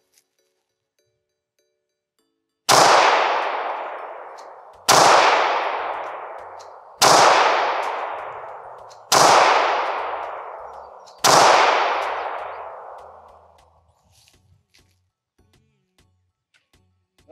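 Five 9mm pistol shots fired at a steady pace, about two seconds apart, each sharp report trailing off slowly.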